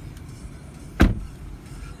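A car door shut once about a second in, a single short thump over a low steady background hum.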